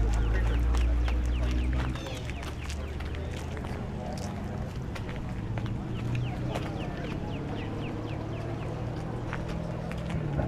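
Outdoor car-show ambience. A steady low engine rumble runs for about the first two seconds and then drops away. After that comes a background murmur of voices with many quick, high, falling bird chirps.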